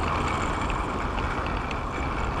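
Steady rush of wind over the microphone and tyre noise of a bicycle rolling along an asphalt path, with a few faint light ticks.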